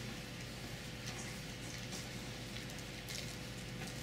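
Water boiling in glass beakers on hot plates: a faint, steady crackling hiss of bubbling, over a steady low hum.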